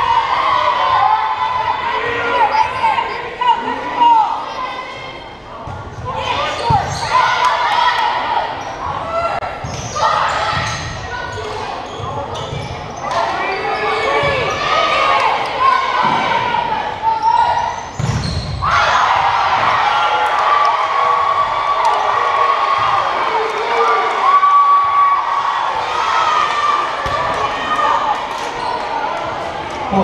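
Indoor volleyball play in a gymnasium: sharp hits of the ball several times over, with a loud thump about eighteen seconds in, under continuous voices of players and spectators that echo in the large hall.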